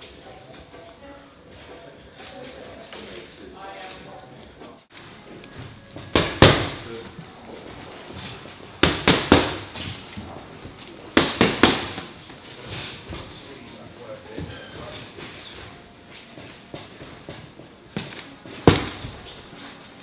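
Boxing gloves landing punches in short combinations: a double strike about six seconds in, then two bursts of three or four rapid strikes around nine and eleven seconds, and a final pair near the end.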